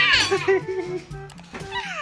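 A toddler's high-pitched squealing laugh sliding down in pitch at the start, and another falling squeal near the end, over background music.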